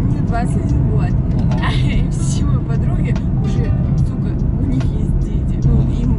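Talking inside a moving car, over a steady low hum of engine and road noise in the cabin.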